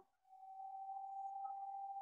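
A faint, steady high-pitched tone that begins about a third of a second in and slowly swells, holding one pitch.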